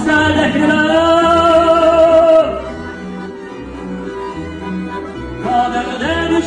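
A male singer holding a long note with vibrato over a small live ensemble with violin, double bass and accordion. About two and a half seconds in the voice stops and the band plays on more quietly, and the singing comes back in near the end.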